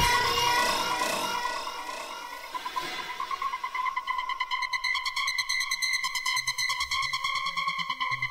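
Electronic dance music in a DJ mix dropping into a breakdown. The kick drum stops and the sound fades away in an echoing tail. About three seconds in, a pulsing synthesizer line comes in with no beat under it.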